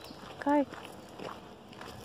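A woman says one short word about half a second in, over faint, irregular footsteps crunching on a gravel road.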